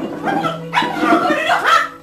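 A woman crying out in distress, with high, wavering cries and no clear words, over a steady background music bed.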